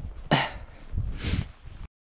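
A man clearing his throat: two short rasping bursts about a second apart, over low rumble from walking and the handheld microphone. The sound cuts off abruptly near the end.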